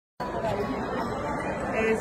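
Background chatter of many people talking at once in a large indoor hall, starting a fraction of a second in, with a nearer voice near the end.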